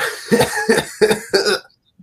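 A man laughing in about five short, breathy bursts that stop about a second and a half in.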